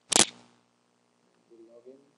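A single loud, sharp click about a quarter of a second in, as the login form is submitted, followed by a faint murmur of voice near the end.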